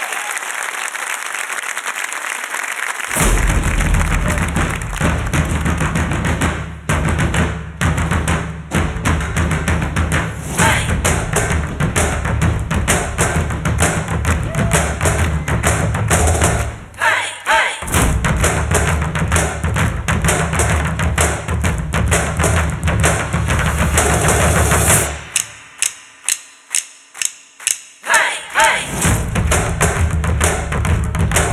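Audience applause, then about three seconds in a music track with a heavy beat starts, with drummers playing metal-shelled samba-style drums over it. Near the end the backing drops out and the drums play a run of single strikes alone, about three a second, before the full music comes back in.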